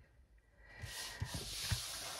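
Camera handling noise as the camera is pulled back and moved: quiet at first, then from just under a second in a rustling hiss with a few soft low thumps.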